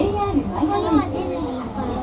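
Speech: a recorded Japanese onboard announcement in a monorail car, telling passengers bound for the Disney Ambassador Hotel to get off here, with children's voices in the car.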